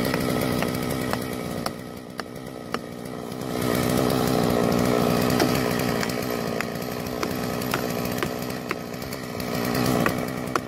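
Stihl chainsaw running in a felling cut, easing off about two seconds in and picking up again near four seconds. Sharp knocks about twice a second run over it, from a hammer driving plastic felling wedges into the cut.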